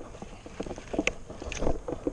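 Irregular soft knocks and rustles of a baitcasting rod and reel being handled close to the microphone, with wind on the microphone; the loudest knocks come about a second in and again near the end.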